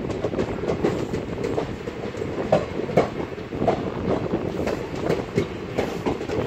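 Passenger train pulling out of a station, heard from the open coach door: a steady running rumble with irregular clicks and clanks of the wheels over the track, the sharpest two knocks about halfway through.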